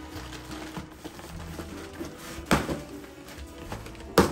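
Soft background music, with a cardboard box being opened by hand: a few light knocks and scrapes of the flaps, the loudest a sharp one about two and a half seconds in.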